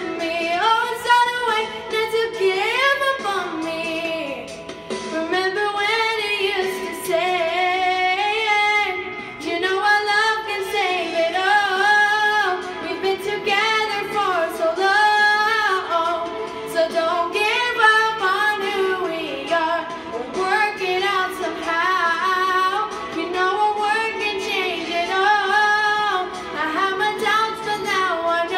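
A young girl singing a song into a handheld karaoke microphone, her voice rising and falling in held, sustained notes.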